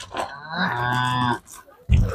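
A cow mooing once, a steady call about a second long that starts about half a second in.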